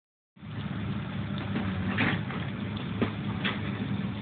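Excavator's diesel engine running steadily with a low hum, with a few sharp knocks in the second half.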